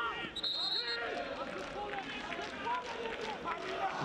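Match sound from a football stadium: several voices shouting over one another, with a referee's whistle blown once briefly about half a second in.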